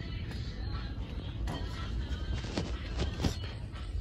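Steady low rumble of a large store interior, with faint background music playing over it.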